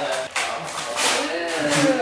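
Wrapping paper rustling and tearing as a gift is unwrapped by hand, under people talking.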